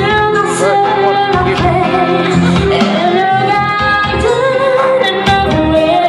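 A woman singing a slow ballad into a microphone over musical accompaniment, holding long notes.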